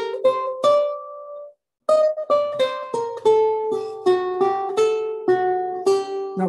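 Renaissance lute playing a slow single-line passage in alternating thumb and index-finger strokes, one clear plucked note at a time at about three notes a second. The sound cuts out briefly about a second and a half in, then the notes go on.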